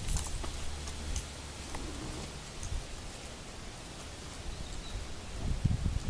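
Steady outdoor rustling hiss with faint footsteps of a person and a dog walking on a sandy dirt path. There are a few soft clicks, and low bumps near the end.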